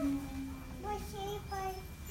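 A young child's voice making drawn-out sing-song sounds without clear words: a held low note, then three short higher notes.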